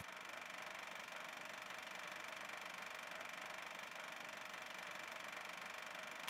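Faint, steady hiss with a thin, even hum in it: a recording's noise floor, with no other sound.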